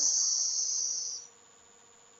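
A high hiss that fades out over about a second, then silence.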